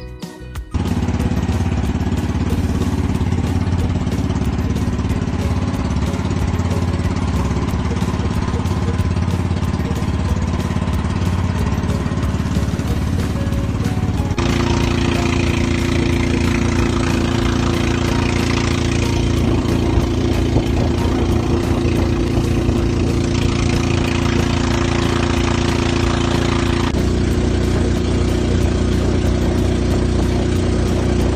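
Motorboat engine running steadily at constant speed, a loud, even drone with rushing wind and water noise over it. The pitch and tone jump abruptly twice, about halfway through and near the end.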